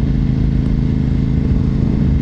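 2004 Honda RC51 (RVT1000R SP2) 1000cc V-twin engine running at a steady cruising speed while riding, its pitch holding even throughout.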